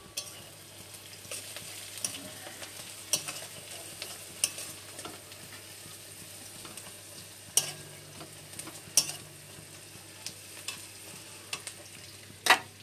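Sliced onions frying in oil in a metal wok, stirred with a steel spatula that scrapes the pan, with a few sharp clicks of the spatula striking the metal.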